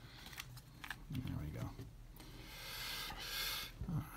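A deck of tarot cards being cut and handled on a table: a few light taps, then a longer soft rustling slide as the cards rub against each other.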